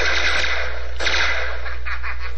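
A long burst of submachine-gun fire from the film soundtrack, a Tommy gun, with a short break about a second in and a steady low hum beneath.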